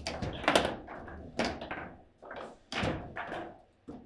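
Foosball match play: the hard ball struck by the plastic figures on the rods and knocking against the table, about six sharp knocks and thuds, the loudest about half a second in.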